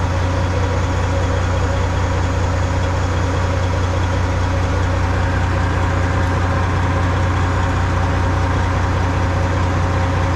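Semi-truck diesel engine idling: a steady low drone that holds level throughout.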